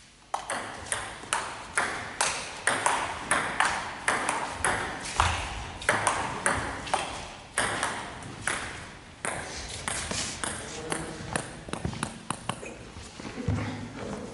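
Table tennis rally: the ball clicks sharply off rubber bats and the table, about two hits a second, each click echoing in a large sports hall. The hits turn smaller and quicker near the end.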